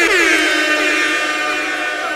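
Edited-in sound effect: a sudden tone that slides down in pitch, then holds steady for about a second. It marks an instant replay of the bar just delivered.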